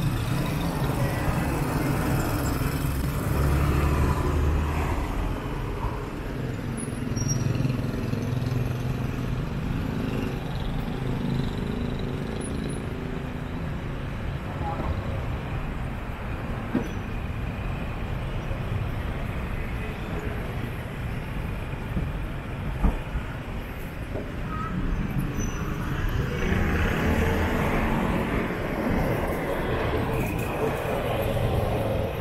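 Street traffic ambience: motor vehicles running and passing, with a deeper engine hum in the first few seconds, background voices, and a single sharp knock about two-thirds of the way through.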